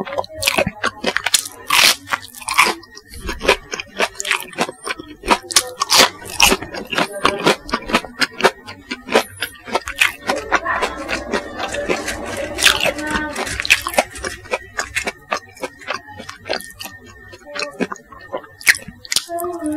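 Close-miked crunching and chewing of crispy chicken nuggets with a bubble-crumb coating, dipped in sauce: many sharp crunches one after another, busiest about ten to fourteen seconds in.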